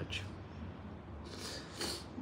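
Fingers scratching through a beard close to the microphone: a brief, quiet rasp at the start and a longer one near the end.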